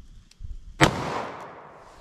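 A single .38 Special +P pistol-calibre shot from a compact revolver: one sharp crack a little under a second in, with its echo dying away over the following second.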